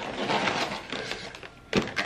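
Plastic grocery packaging rustling and crinkling as it is handled, with one sharp click near the end.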